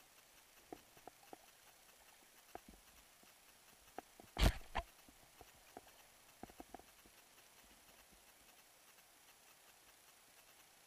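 Irregular light knocks and clicks from a kayak paddle being stroked and tapping against the boat, with one louder thump about four and a half seconds in.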